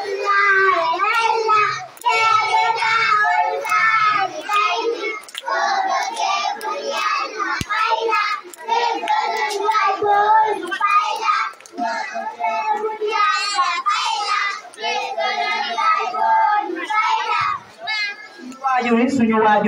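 Young children singing a song together, one girl's voice carried through a microphone, with scattered hand claps.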